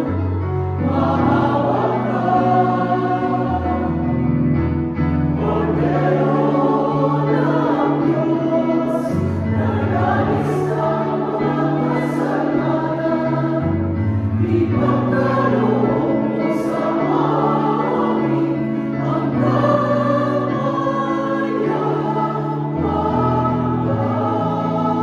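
A mixed choir of men and women singing a hymn in parts, with an organ-sounding keyboard holding long bass notes that change in steps underneath.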